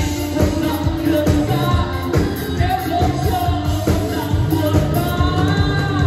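Live pop band playing: a man singing into a microphone over a drum kit, electric guitar and keyboard, with a steady drum beat.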